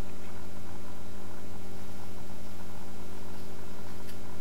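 A steady low electrical hum, like mains hum, holding unchanged throughout with no other distinct sound.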